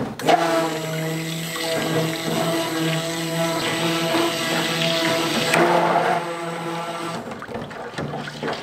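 Stick blender running in a tub of soap-making oils, blending in coconut milk: a steady motor hum with liquid churning. It starts just after the beginning and cuts off about a second before the end.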